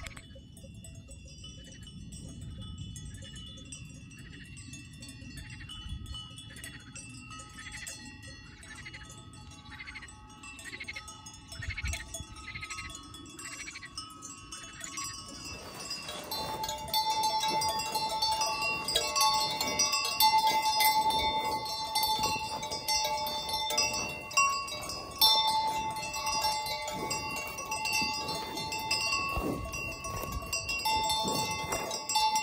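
Brass cowbells on grazing cattle ringing and clanking: faint and regular at first, then much louder and busier from about halfway, with close clanks from a belled cow grazing nearby.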